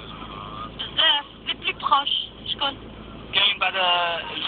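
Arabic-language talk from a distant Algerian FM station coming through a Degen DE1103 portable receiver's speaker, with a steady hiss underneath: weak long-distance FM reception.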